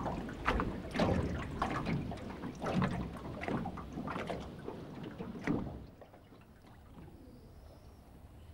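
Sea water lapping and splashing against a small boat's hull in irregular surges, falling away to a faint wash about six seconds in.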